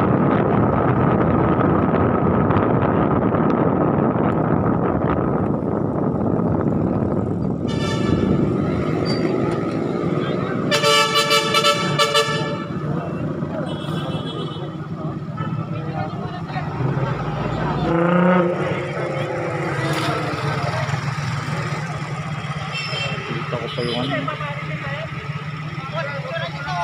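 Riding a motorcycle along a city road, with wind and road noise, then a vehicle horn sounds: a short toot about eight seconds in and a longer honk of about two seconds near eleven seconds in. After that, traffic runs past with a steady engine hum and people's voices.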